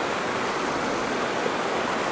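Mountain creek rushing over rocks and small cascades: a steady wash of water.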